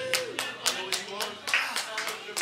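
Small audience applauding with scattered claps and voices calling out as a song ends. A held electric guitar note slides down and fades out just after the start.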